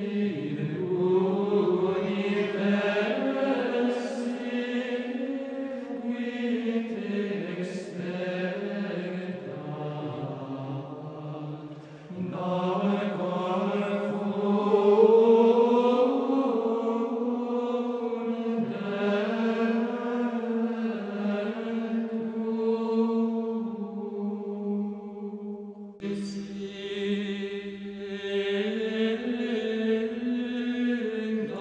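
Gregorian chant: voices singing a slow melodic line together in long, flowing phrases, with brief breaks about twelve seconds in and again near the end.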